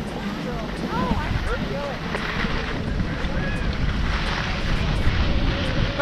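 Skis sliding over groomed snow during a downhill run, with wind buffeting the camera microphone in a steady rushing noise.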